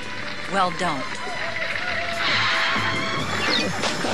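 Background music with a person's voice, and a noisy hiss-like burst lasting about a second and a half in the middle.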